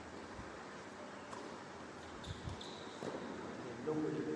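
A tennis ball bounced on an indoor hard court by a player readying to serve: a couple of dull thuds about halfway through.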